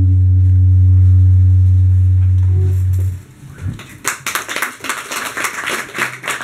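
The final chord of a live song ringing out: a loud, low electric bass note with guitar tones above it, held for about three seconds and then stopped. About a second later a small group starts applauding.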